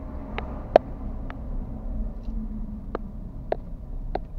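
Car cabin noise while driving, a steady low rumble from the engine and tyres, with a few sharp clicks at irregular moments.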